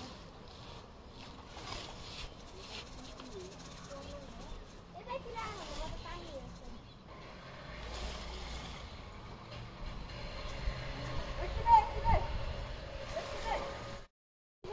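Faint, distant voices of people talking over outdoor background noise, with a low rumble building in the second half.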